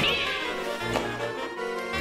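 Background music with a cat meowing once at the start, a short call that falls in pitch.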